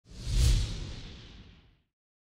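A whoosh sound effect from a logo intro sting, with a deep rumble beneath it. It swells to a peak about half a second in and then fades away before the end.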